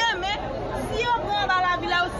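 Speech only: a woman speaking emphatically, with chatter from people around her.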